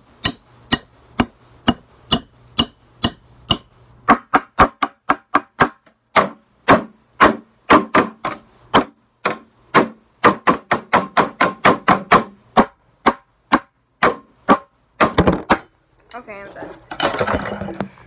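Wooden drumsticks striking a bucket in an uneven drumming pattern, several hits a second with quick runs of strokes. Near the end the hits stop and the phone camera is bumped and handled.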